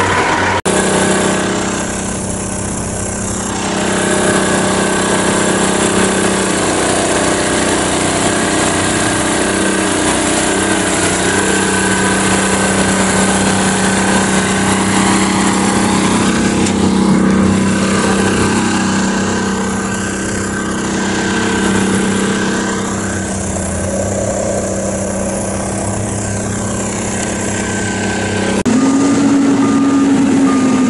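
An engine idling steadily with a constant low hum. About a second and a half before the end, a different engine takes over with a slightly higher, steady drone.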